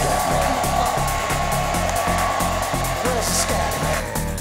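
Hand-held hair dryers running steadily, a high whine over airy hiss, with background music with a steady beat underneath.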